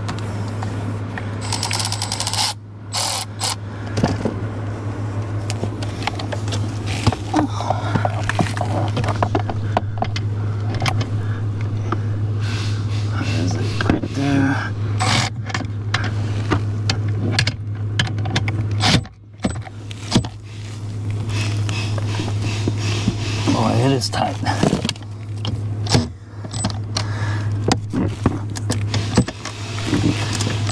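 Hand-tool work on a car's steering column: irregular metal clicks, clinks and scrapes as a bolt and the column parts are worked loose, over a steady low hum.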